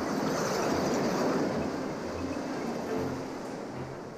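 Heavy ocean surf breaking and washing in: a rush of water that swells over the first second or so and slowly fades. Background music with a repeating bass line plays underneath.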